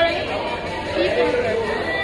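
Chatter of many voices in a busy restaurant dining room, with a woman's voice close by.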